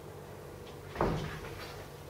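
A single short, dull thump about a second in, against faint room noise.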